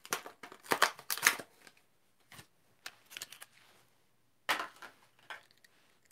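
A blister-carded Matchbox die-cast car being opened: plastic blister and cardboard card crackling and tearing in several short bursts, the loudest at the start and another near the end.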